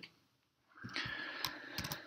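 A few sharp clicks of a computer keyboard over a faint hiss, starting after a brief silence.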